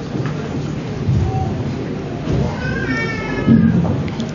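A single high-pitched, wavering cry lasting about a second, starting about two and a half seconds in, over a low background murmur.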